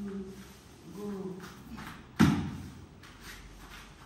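Wrestlers grappling barefoot on a foam mat: one loud thump a little past halfway, with short bits of voice near the start and about a second in.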